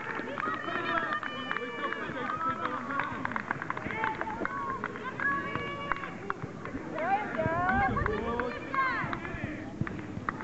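Children's high voices calling and shouting during a youth football game, over background chatter from spectators, with scattered short knocks.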